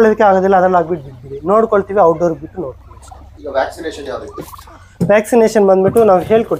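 Domestic turkey toms gobbling: four warbling gobbles in a few seconds, the third one quieter.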